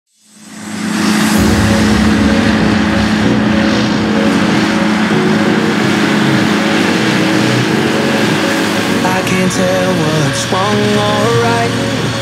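John Deere tractor engine running steadily under load while driving front and side disc mowers through standing grass, with the mowers' whirring mixed in. Music with a melody comes in about three-quarters of the way through.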